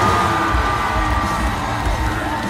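Loud live heavy metal from a rock show's PA, with the band's heavy bass and drums pulsing under a long held high note. The crowd cheers and yells over the music, heard from among the audience.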